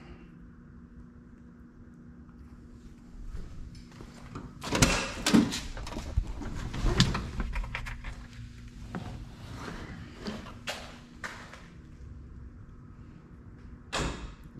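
A pickup truck door and things inside it being handled: a run of clunks and knocks, the loudest about five and seven seconds in.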